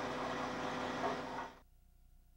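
Aerial ladder fire truck's engine running steadily, with a low hum under an even outdoor noise, cut off abruptly about one and a half seconds in.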